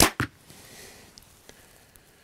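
A 65-pound Mamba 34 compound bow shooting a 397-grain Kill'n Stix Ventilator carbon arrow: a sharp crack as the string is released, then a second sharp knock about a fifth of a second later, fading to a faint hum.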